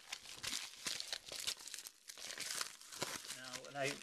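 A padded mailer envelope being torn open and crinkled by hand: a dense run of crackles and rips, with a short lull about halfway.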